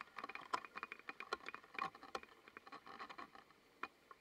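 Small wavelets lapping and trickling against rocks at the water's edge: a faint, quick, irregular patter of little clicks and gurgles.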